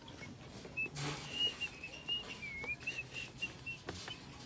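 Someone whistling a quick run of short high notes at nearly one pitch, with one dipping note partway through. A brief rustle of the handheld phone comes about a second in.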